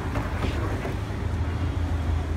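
Low, steady rumble of car engines in street traffic close by.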